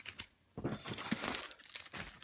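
Plastic comic-book bags crinkling and rustling as a stack of bagged comics is handled. It is an irregular crackle of many small ticks that starts about half a second in.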